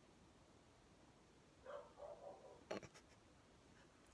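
Near silence: room tone, with a faint brief sound a little before halfway and a single soft click just after.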